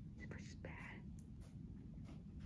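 Faint whispering: a few short breathy bursts in the first second, over a low steady rumble.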